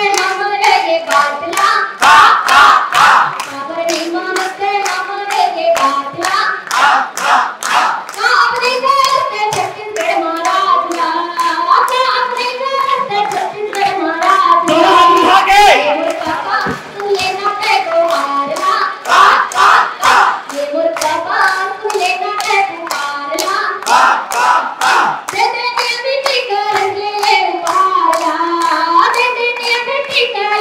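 A woman singing a song through a microphone and loudspeaker, with a large crowd clapping steadily in time, about two claps a second.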